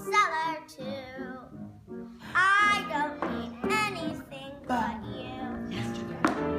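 A young girl singing a show tune over musical accompaniment, with a short break in the singing about two seconds in.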